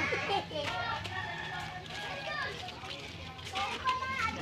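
Faint background chatter of children's and adults' voices, quieter than the nearby talk before and after, over a low steady hum.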